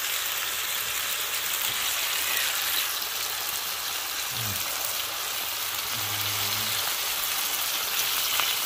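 Lamb shoulder chops searing in hot oil in a nonstick frying pan, a steady even sizzle.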